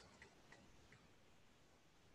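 Near silence, with a few faint ticks of a stylus writing on a tablet screen in the first second.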